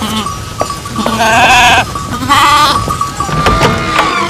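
Sheep bleating twice: a wavering call of under a second about a second in, and a shorter one about two seconds in.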